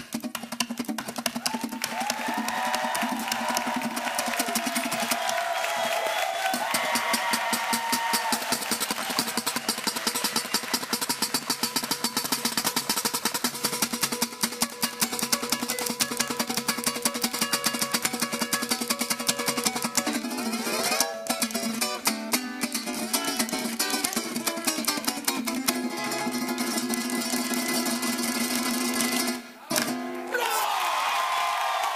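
Venezuelan cuatro played solo with fast, dense strumming over a melody line. About 21 seconds in the playing changes, with sliding notes, then moves into slower, held chords toward the end.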